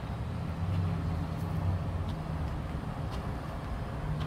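Low, steady engine rumble of road traffic, with a few faint ticks.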